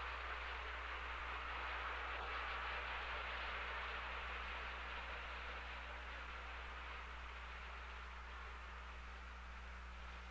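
Submarine contact heard over sonar as a steady rushing hiss that slowly fades away as the contact stops cavitating and goes deep. A low steady hum runs underneath.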